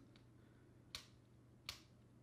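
A spinning reel's bail arm flipped over by hand, giving two sharp clicks a little under a second apart. The bail is being worked to spread fresh oil into its pivots.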